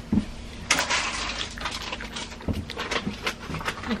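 Close-up crunching and chewing of a garlic clove, a dense run of crisp crackles starting about a second in and thinning out later.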